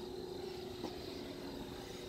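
Quiet background with a faint, steady high-pitched insect trill and a soft click a little under a second in.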